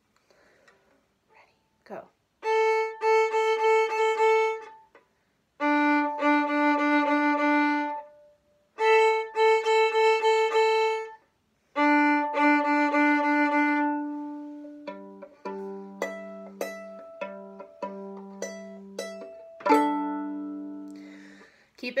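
Violin playing a beginner tune: four bowed phrases on the open A and D strings (A, D, A, D) in a quick "down, wiggle, wiggle, up" rhythm, then left-hand pizzicato, with single plucked notes ringing and fading. About 20 s in comes the loud "squawk", all four strings, G, D, A, E, plucked in one sweep and left ringing.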